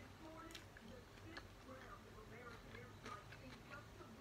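Faint chewing of a sandwich, with a few soft, sharp mouth clicks and smacks scattered through it.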